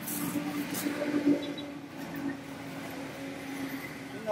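A steady engine hum, with plastic bags crackling and rustling as fruit is bagged, loudest in the first second or so.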